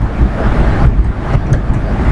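Loud, steady low rumbling background noise with no speech.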